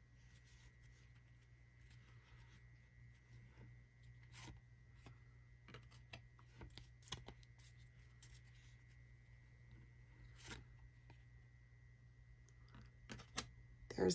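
Faint soft clicks and scrapes of Panini NBA Hoops trading cards being slid one by one off a hand-held stack, over a low steady hum.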